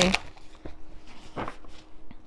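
Tarot cards being shuffled by hand: soft flicking and sliding of the cards, with two sharper taps less than a second apart.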